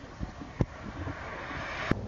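Outdoor rushing noise, like wind on the microphone, swelling over the second second and cutting off abruptly just before the end, with a few sharp clicks.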